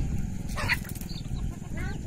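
Chickens calling: two short squawks, one about half a second in and one near the end, over a steady low rumble.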